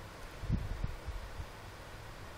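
Quiet background room noise with a couple of soft low bumps, about half a second and just under a second in.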